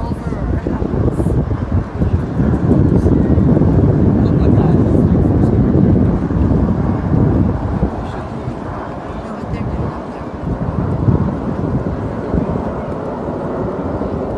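Formation of CT-114 Tutor jet aircraft passing overhead: a broad jet roar that builds over the first couple of seconds, is loudest through the middle and fades away after about eight seconds.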